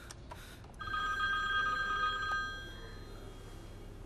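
Mobile phone ringing: one steady electronic ring starting about a second in and lasting about two seconds, fading out near the three-second mark.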